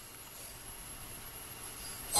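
Faint, steady hiss of background noise with no distinct event: room tone and recording noise in a pause in speech.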